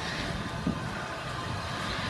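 Steady low background noise with rumble from a handheld phone microphone being carried, and a small knock about two-thirds of a second in.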